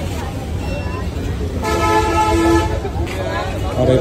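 A vehicle horn sounds one steady toot of about a second near the middle, over the continuous chatter and rumble of a busy market street.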